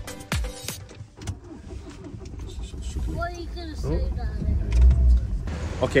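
Dance music with a steady beat for about the first second, then the low rumble of a motor vehicle with a faint voice over it. The rumble is loudest a little before the end.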